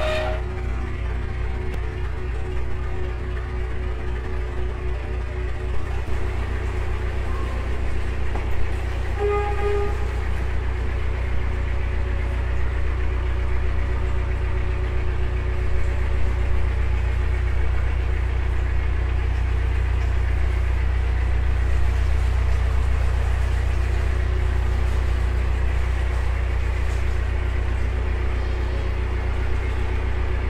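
Narrowboat engine running steadily with a low, even pulse, heard inside a brick canal tunnel.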